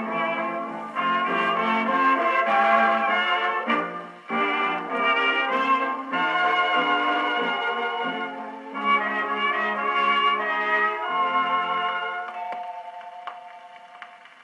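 A 1929 dance orchestra on a 78 rpm shellac record, played on a gramophone with an acoustic soundbox. Trumpets, trombones and reeds play the closing bars, and the band ends on a held chord that fades out near the end.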